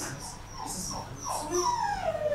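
Puppy whimpering: several short, thin, high-pitched whines, then a longer whine that falls in pitch near the end.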